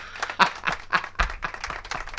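Several people laughing hard in quick, breathy, irregular bursts.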